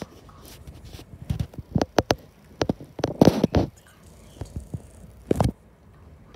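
A run of irregular knocks and taps, with a longer rubbing, scraping stretch a little past halfway and one last knock near the end.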